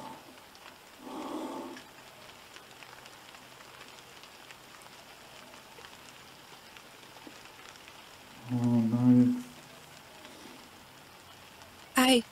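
Steady, faint rain falling, as a constant hiss. A short, low human voice sound breaks in about eight and a half seconds in, lasting about a second.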